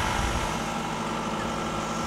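Engine of the tractor-mounted post-driving rig idling steadily: a low rumble with a faint, constant hum above it and no pounding.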